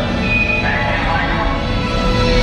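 Loud soundtrack music mixed with voices, played over a theater's sound system during a recorded show.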